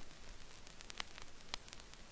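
Faint hiss with a few sharp clicks from hands working a DJ mixer and turntable before any music plays.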